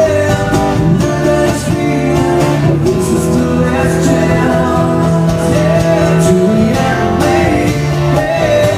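Live unplugged band music: a male lead vocal sings over acoustic guitar accompaniment.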